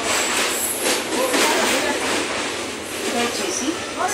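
Train crossing a steel truss railway bridge, heard from the open carriage doorway: a steady rumble of wheels on the rails with some clatter.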